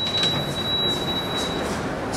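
Elevator car running: a steady rumbling hiss with a thin high whine that stops shortly before the end.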